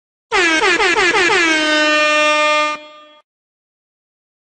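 Air horn sound effect: a run of quick blasts, each dropping in pitch, then one long held blast that stops abruptly.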